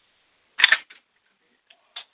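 A single sharp click with a brief noisy burst about half a second in, then two faint ticks near the end, with near silence in between.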